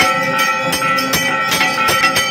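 Temple bells clanging rapidly for aarti, struck a few times a second with their metallic tones ringing on between strikes.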